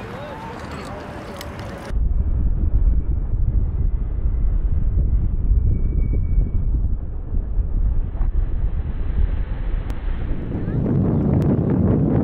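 Wind buffeting the camera microphone: a loud, steady low rumble that starts abruptly about two seconds in and grows fuller near the end. Before it, a person's voice is heard briefly.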